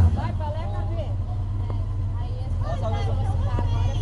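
A steady low rumble, with faint chatter from a group of onlookers over it.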